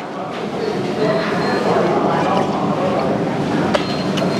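Steady background din of a busy eatery: indistinct voices and room noise. A single sharp clink, a spoon against a ceramic bowl, comes near the end.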